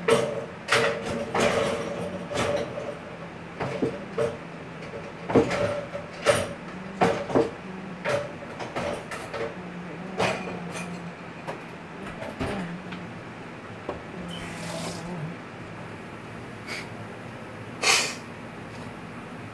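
Sharp slaps and claps echoing in a large arena hall. They come about a dozen times in the first eight seconds, then only now and then, over a steady low hum.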